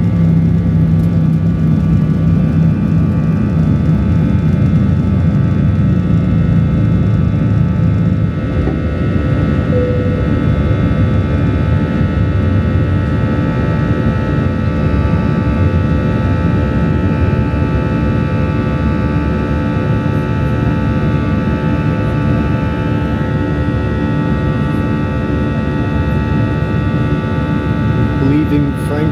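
Airliner engines at takeoff power heard from inside the cabin during the takeoff roll and climb-out: a loud, steady low rumble with steady whining tones over it. The rumble eases slightly about eight seconds in.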